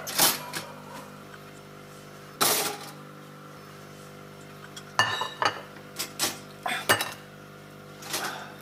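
Kitchen clicks and clatter from a stainless four-slice toaster and its toast, over a steady hum. There is a knock just after the start, another about two and a half seconds in, and a quick run of sharp clicks and knocks from about five to seven seconds.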